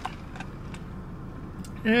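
Steady low rumble of a car's cabin, with a faint click about half a second in. A woman's 'mmm' starts near the end.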